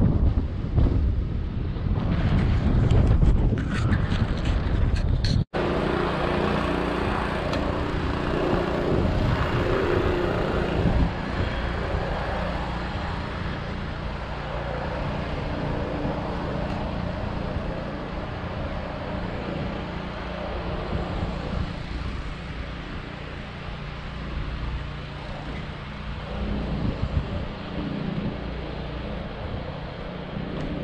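Wind buffeting the microphone of a camera moving along the road, loud and gusty for the first five seconds. After an abrupt cut, a steadier, quieter road rumble with a faint low hum continues.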